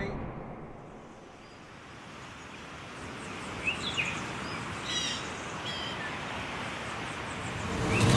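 Quiet outdoor ambience from the opening of a music video: a steady hiss that slowly grows louder, with a few short bird chirps in the middle and a louder swell near the end.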